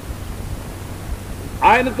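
Steady hiss with a low rumble from a noisy recording, in a short pause between a man's words; his voice starts again about one and a half seconds in.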